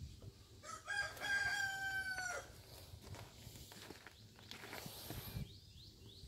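A rooster crowing once: a single drawn-out call starting about a second in, held at an even pitch for about a second and a half and dropping at its end.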